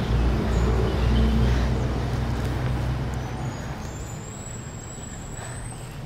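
Low rumble of a motor vehicle passing on the road, loud at first and fading away over the first few seconds, over steady traffic noise.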